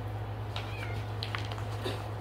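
A pet's brief high-pitched call, a short gliding squeak or meow about half a second in, over the soft rustle and clicks of coloring-book pages being turned.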